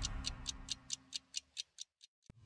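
Ending of a TV programme's closing theme: a clock-like ticking effect, about four and a half ticks a second, growing fainter as the music underneath fades out.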